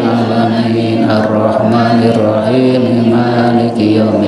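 A man's voice chanting an Arabic prayer melodically into a microphone, in long held notes that step from pitch to pitch, with a short break near the end.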